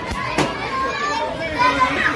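Children's voices and chatter, with a single sharp bang about half a second in.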